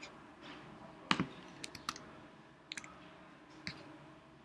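A few separate clicks from a computer keyboard and mouse, the sharpest about a second in, with quiet room tone between them.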